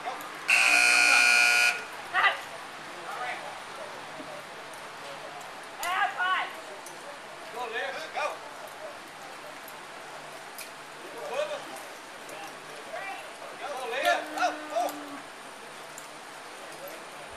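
An electric arena buzzer sounds once for about a second, a loud steady buzz, followed by scattered distant shouts.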